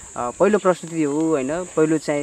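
A man's low voice speaking in Nepali over a steady, high-pitched drone of insects.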